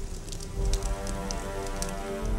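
Fire crackling with many small sharp pops as a plastic face mask burns, over sustained background music.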